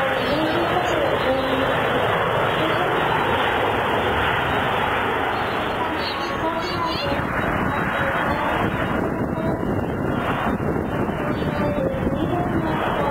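Jet airliner engines running during a landing: first a Boeing 737-500 rolling out just after touchdown, then a Boeing 767-300 on short final. The sound is steady throughout, with people's voices talking over it.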